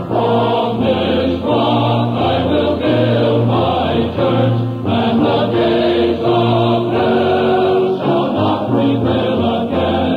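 Adult church choir singing with instrumental accompaniment over a pulsing low bass line, the choir coming in right at the start after a purely instrumental passage.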